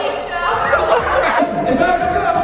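Indistinct, overlapping voices of people on stage exclaiming and chattering, with background music underneath.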